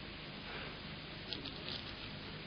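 Faint steady hiss and low hum of the sermon recording's room tone, with a few soft rustles and clicks about halfway through.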